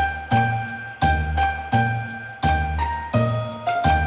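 Closing music: bright, bell-like ringing notes over a steady low beat of about three beats every two seconds, the bell notes shifting pitch near the end.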